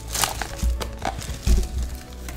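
Foil booster packs being handled, with light crinkling and rustling, a few clicks and two soft bumps, over faint steady background music.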